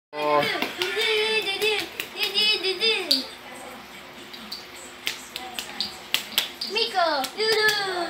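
A child's voice, high and changing in pitch, for about the first three seconds and again near the end, with scattered light clicks and knocks of handling in the quieter stretch between.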